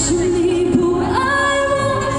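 A woman singing live into a handheld microphone over the stage sound system, holding long notes and stepping up in pitch about a second in. The deep bass of the backing drops out as it begins, leaving the voice nearly bare.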